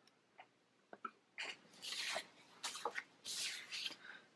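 Paper planner pages and sticker sheets handled and shifted on a desk: a few light ticks, then several short bursts of paper rustling and sliding.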